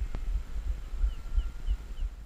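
Low wind rumble on the microphone, with a faint steady whine underneath and a single click just after the start. In the second half a small bird gives four short, high chirps about a third of a second apart.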